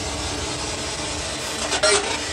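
Spirit box sweeping through radio stations: a steady hiss of static. Near the end a brief voice-like fragment breaks through, which the investigators read as the words "a lady".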